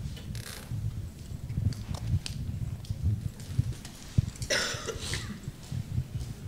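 Room noise in a pause between speakers: a low, uneven rumble of movement with a few soft knocks, and a short cough-like burst about four and a half seconds in.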